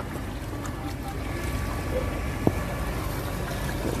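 Steady low rush of floodwater seeping through an old river levee, with one short click about two and a half seconds in.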